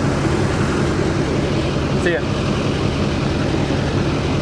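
A Duramax diesel pickup engine idling steadily.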